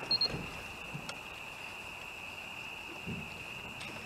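A steady, high-pitched drone of night insects, with a quick run of short, high electronic beeps just after the start.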